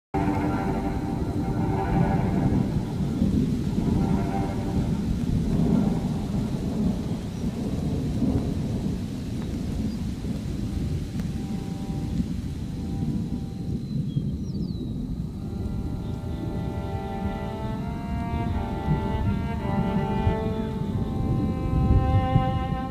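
A thunderstorm: rain with a continuous low rumble of thunder. Slow ambient music tones sound over it at the start, fade, and come back about two-thirds of the way in.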